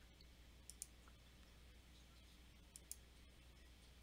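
Computer mouse clicking over near silence: two pairs of quick clicks, about two seconds apart.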